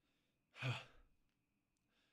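A man's short, breathy sigh a little over half a second in, falling in pitch.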